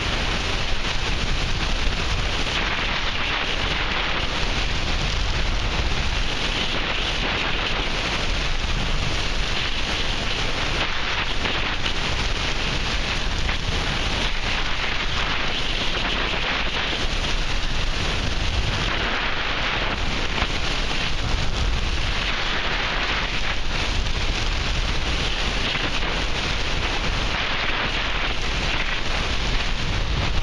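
Steady rush of airflow buffeting the microphone of a camera mounted on a tandem hang glider in flight, swelling and easing every few seconds.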